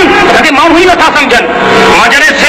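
Only speech: a man's voice speaking loudly through a microphone and loudspeaker.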